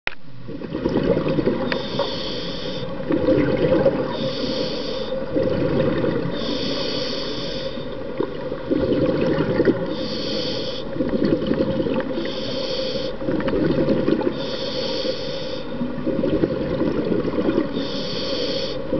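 Scuba diver breathing through a regulator underwater: a hissing inhale every two to three seconds, with the bubbly rumble of the exhale between them.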